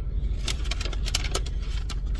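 White butcher-paper wrapping of a sub sandwich crinkling and crackling in quick irregular bursts as it is handled, over a steady low rumble.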